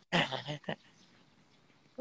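A woman's short burst of laughter in the first second.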